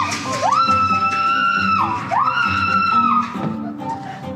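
Two long, high-pitched screams from a person riding down an enclosed tube slide, each sliding up to a held note for about a second. Frightened screams from someone afraid of heights, heard over background music with guitar.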